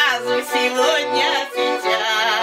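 A woman singing with accordion accompaniment: her voice slides and bends over steady, sustained accordion chords.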